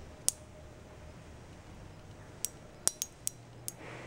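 Silica gel beads in water on a steel spoon popping: sharp, irregular clicks, one soon after the start and then five in quick succession over the last second and a half, as the beads crack on soaking up water.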